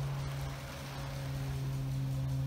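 A steady low hum over a haze of hiss, with no bird calls.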